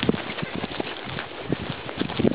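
Horses' hooves clip-clopping at a walk on a dirt and stony trail, an uneven run of several hoof falls a second.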